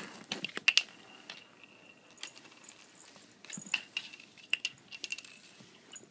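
A bottle cap batted and skittering across a hardwood floor: scattered light clicks and clatters at irregular moments.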